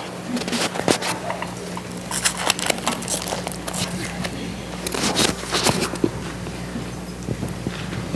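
A church congregation shuffling and murmuring as people stand, with scattered clicks, knocks and rustling over a steady low hum.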